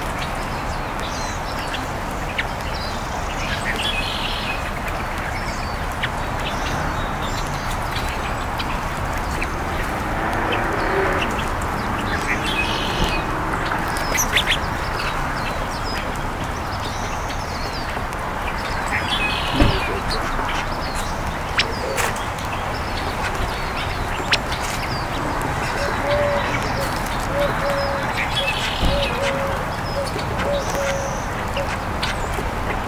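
Birds calling while feeding, over a steady background rush: scattered high chirps, a few sharp taps, and a run of short, low, repeated clucking notes near the end.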